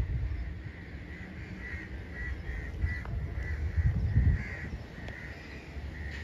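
Crows cawing repeatedly in a quick series of short calls, over a low rumble that swells near the start and again about four seconds in.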